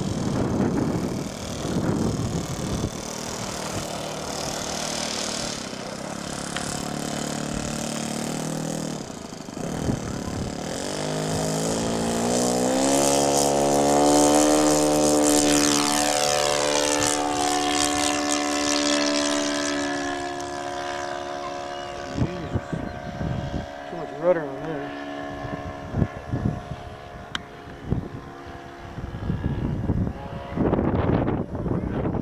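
Radio-controlled P-47 model's four-stroke engine and propeller. It runs steadily at first, then rises in pitch as it opens up for the takeoff and is loudest as the plane passes close and climbs out. It then falls in pitch and fades as the plane flies away.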